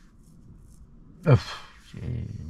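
A man's short "ah!" exclamation about a second in, its pitch falling steeply into a breathy tail, over a low steady hum inside a car.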